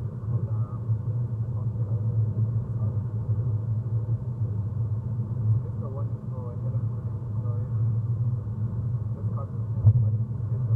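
Steady low road and tyre rumble inside the cabin of a BMW i3 electric car cruising at highway speed, with the sound muffled.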